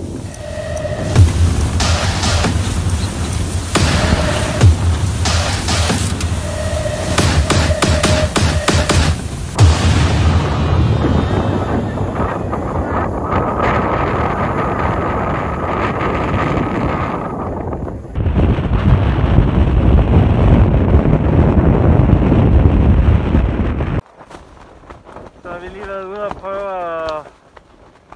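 Storm wind buffeting the microphone and shaking the tent fabric, with sharp cracks of flapping cloth in the first ten seconds. A continuous loud rush of wind follows, stronger from about two thirds of the way in, and stops abruptly near the end.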